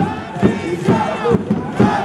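Baseball crowd shouting a cheer chant in rhythm, over a steady beat about twice a second.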